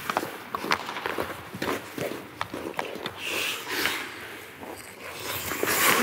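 Ice hockey skates on rink ice with repeated sharp clicks of sticks handling a puck; a louder hiss of blades scraping the ice swells near the end.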